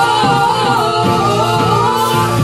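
Gospel song: sung vocals holding and gliding between sustained notes over a steady beat, with backing voices.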